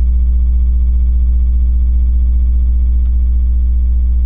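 Loud, steady low electrical hum with a stack of evenly spaced overtones, unchanging throughout, and one faint click about three seconds in.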